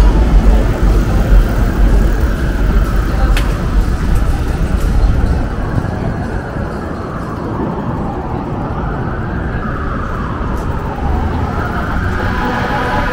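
City street traffic: cars passing with a heavy low rumble, loudest in the first half, then settling to a quieter steady hum.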